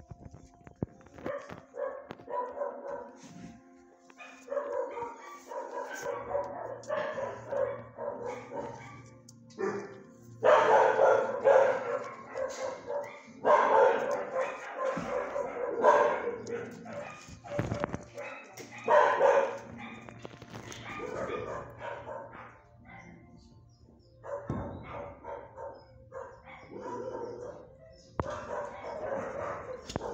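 Dogs barking repeatedly in a shelter kennel, in loud bouts with quieter stretches between.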